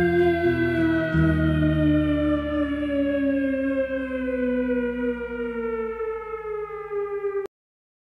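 The end of a song: a sustained electronic tone with several overtones slides slowly down in pitch, siren-like, over lower held notes that fade out. It cuts off suddenly about seven and a half seconds in.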